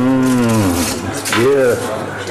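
A low human voice drawing out a long moo-like 'ooh', then a shorter one that rises and falls in pitch.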